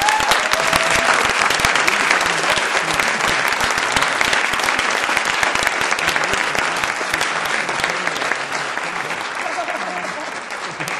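Audience applauding, starting suddenly and loudest at first, easing slightly toward the end, with a brief whoop or two among it.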